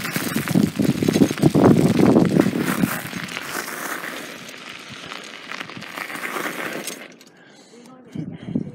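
Bicycle tyres rolling over gravel with a crackling crunch, mixed with wind buffeting the microphone. It is loudest in the first few seconds, fades, then stops suddenly about seven seconds in.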